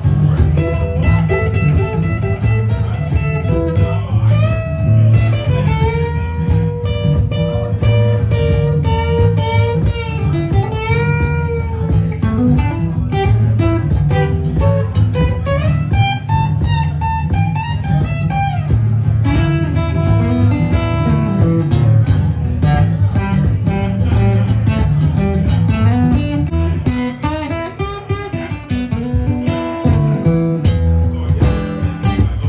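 Cole Clark acoustic guitar played solo in blues riffs: a steady thumbed bass runs under lead lines, with bent notes pushed up and let back down, most of them in the middle of the passage.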